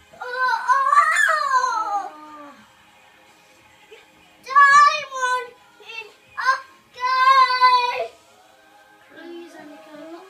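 A toddler singing loudly in a high child's voice, in four drawn-out phrases with quiet pauses between them, the longest near the start.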